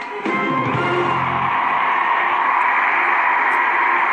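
The close of a live pop song performance, heard through a television speaker: a final low band chord, then a steady loud wash of sound that carries on without a clear melody.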